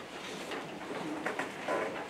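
Sheets of paper rustling and crackling as they are handed out, with a brief soft, low voice near the end.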